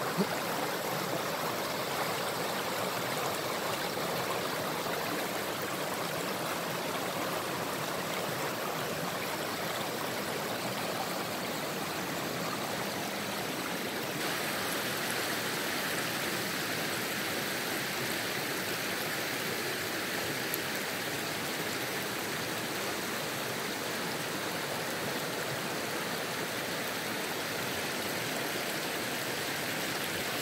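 Shallow rocky river running over small rapids: a steady rush of water.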